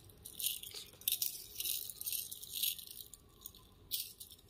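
Gold-finish metal necklace chains jingling and clinking as they are shaken and gathered in the hands, in a few short, irregular bursts of light rattling.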